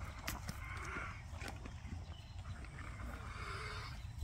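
A horse breathing hard close to the microphone, two long noisy breaths about two seconds apart through flared nostrils: laboured breathing, the horse struggling.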